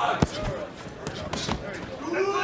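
Boxing gloves landing punches: several sharp smacks, the loudest about a quarter of a second in, over shouting from the crowd.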